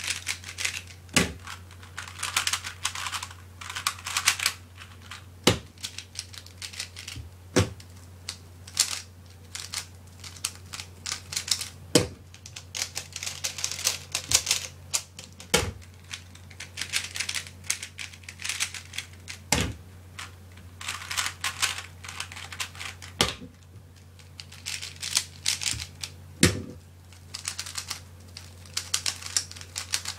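Fast plastic clicking and clacking of a 3x3 speedcube being turned by hand, in bursts with short pauses between runs of turns, with an occasional louder knock.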